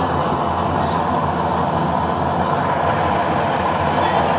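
Used-oil burner stove running with a steady, even rushing noise. It is burning cleanly with a blue flame.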